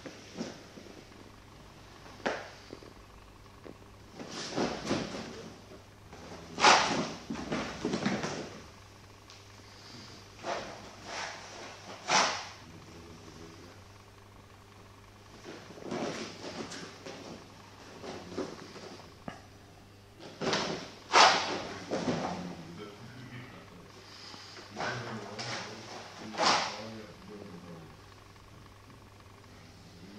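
Movement sounds of a solo wooden-sword kata on a dojo mat: bursts of swishing and rustling every few seconds, the loudest about 7 and 21 seconds in, over a low steady hum.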